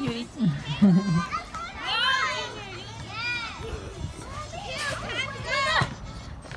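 Young children's high-pitched calls and squeals at play: several separate calls, each rising and falling in pitch.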